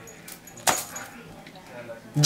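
Small metal scissors and a cut fabric wristband being handled: one sharp click about two-thirds of the way through, with a few faint clicks and rustles.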